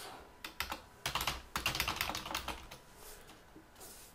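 Computer keyboard being typed on in short, quick runs of keystrokes, the strokes growing sparser in the last second or so.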